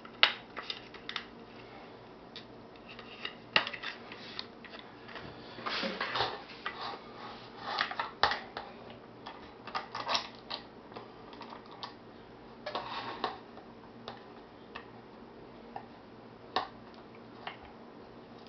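Irregular light clicks and knocks of plastic and metal parts being handled and fitted together as a suction-cup camera mount is assembled, its camera head being put onto the cup's base.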